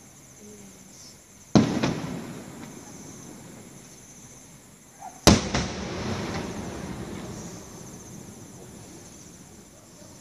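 Two loud firecracker bangs, about a second and a half and five seconds in, each followed by a long echoing rumble that fades over several seconds.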